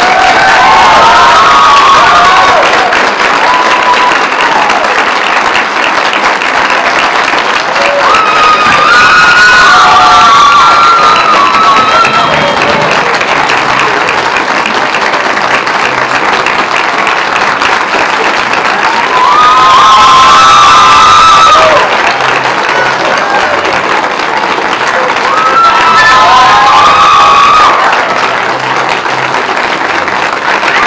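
Theatre audience applauding and cheering at a curtain call, with whoops and shouts. The applause swells louder several times.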